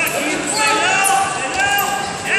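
Wrestling shoes squeaking on the mat as two freestyle wrestlers grapple: several short squeaks.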